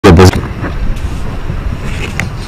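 A clipped fragment of a man's voice cut off within the first third of a second, then a steady low outdoor background rumble picked up by the microphones.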